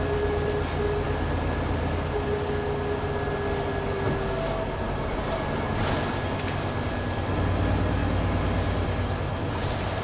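Interior of a moving city bus: steady engine and road rumble with a thin high whine. The low rumble grows louder about three-quarters of the way through, and there is one short click about six seconds in.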